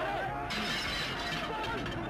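A sudden shattering crash about half a second in, its bright clatter trailing off over the next second.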